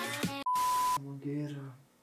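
Electronic dance music with a fast beat cuts off abruptly, and a half-second high steady beep with hiss under it follows, an edited-in bleep effect. A voice follows briefly after the beep.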